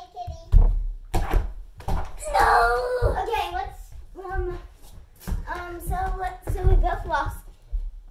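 Children's voices calling out and squealing, with several thumps and footfalls on the floor.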